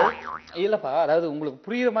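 A man's voice talking, its pitch bending up and down, with short pauses between phrases.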